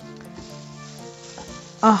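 Silicone spatula stirring thick cold-process tallow soap batter at medium trace in a plastic tub: a faint, soft scraping with small ticks, under low steady background tones.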